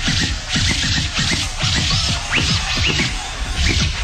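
A DJ scratching a vinyl record over a hip hop beat: quick scratches sweeping up and down in pitch, several a second, over a steady kick-heavy rhythm.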